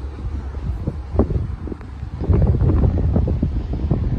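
Wind buffeting the microphone outdoors: an uneven low rumble that grows stronger about two seconds in.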